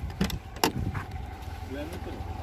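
A Lada sedan's door being opened: two sharp clicks of the handle and latch about half a second apart, over a low steady rumble.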